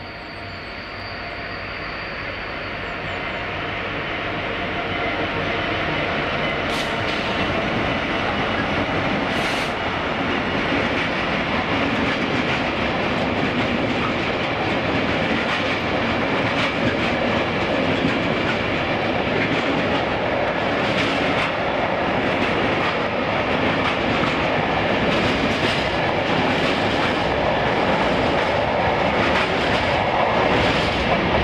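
Freight train passing: a Class 66 diesel locomotive approaching, rising in level over the first several seconds, then a long rake of empty box wagons rolling by with a steady wheel rumble and scattered clicks of wheels over rail joints.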